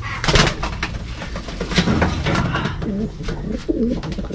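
Racing pigeons cooing, low repeated coos from about two seconds in, after a brief flurry of wing flapping and rustling near the start as a bird is taken from its nest box.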